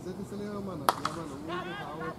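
A single sharp crack of a cricket bat striking the ball about a second in, with men's voices calling around it.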